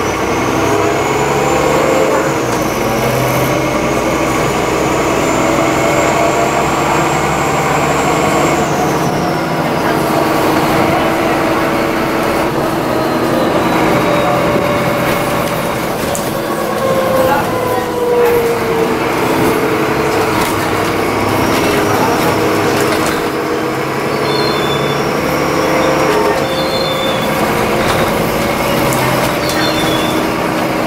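Cabin sound inside an Alexander Dennis Enviro400 double-decker bus on the move: the engine and drivetrain run under a steady rumble of road noise, with whines that rise, hold and fall in pitch as the bus speeds up and slows down.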